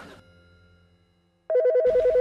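Telephone ringing: an electronic ring of two tones warbling rapidly back and forth, starting suddenly after a moment of silence. Before it, the end of the previous scene's music fades out.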